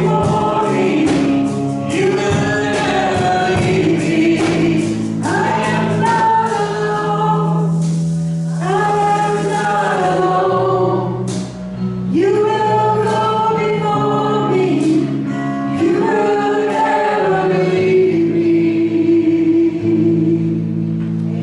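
A group of voices singing a slow worship chorus in phrases of a few seconds, over steady sustained low chords. Near the end the voices hold one long note.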